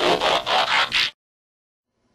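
Short raspy, noisy logo sound effect: about four quick pulses over roughly a second, then it cuts off suddenly.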